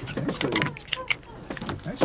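Oyster knife clicking and scraping against hard oyster shells as oysters are shucked, a quick irregular series of sharp clicks.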